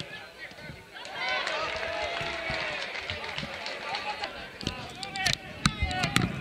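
Several voices shouting and calling at once at an outdoor football match, from about a second in. A couple of sharp knocks come near the end.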